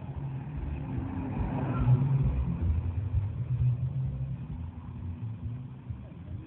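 A motor vehicle's engine rumbling, growing louder about two seconds in and easing off toward the end.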